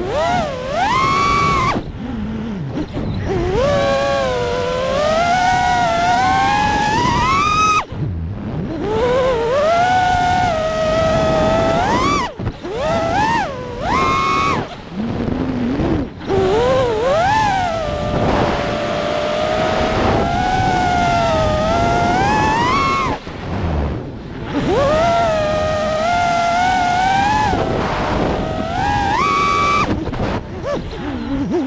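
FPV freestyle quadcopter's motors and propellers whining, the pitch sliding up and down constantly with the throttle, over a rush of air noise. The whine drops out briefly several times where the throttle is cut, then climbs back in.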